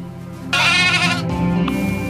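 A lamb bleats once, a wavering call of under a second starting about half a second in.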